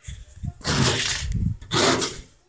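Loud rubbing and scraping close to the microphone, in two stretches with the louder one near the end.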